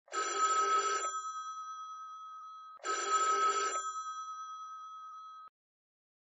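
Telephone bell ringing twice. Each ring is about a second of rapid rattling, with the bell tones lingering and fading after it. The second ring comes nearly three seconds in, and the ringing cuts off suddenly about five and a half seconds in.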